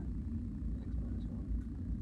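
Steady low rumble of classroom background noise, with a student's reply heard faintly off-microphone.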